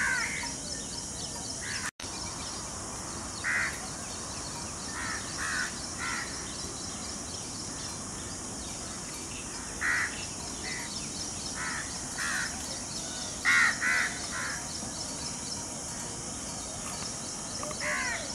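Birds calling: short calls, singly and in quick pairs, scattered through, the loudest pair about three-quarters of the way in, over a steady high-pitched background chorus. There is a brief dropout in the sound about two seconds in.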